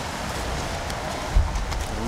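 Indoor pool ambience during a swimming race: a steady wash of noise from swimmers splashing and the crowd, with a single low thump a little under a second and a half in.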